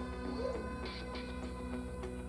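Quiet background music with steady, sustained tones.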